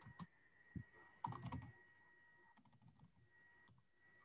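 Faint computer keyboard typing: a few scattered keystroke clicks, with a short run of them a little over a second in, over near silence.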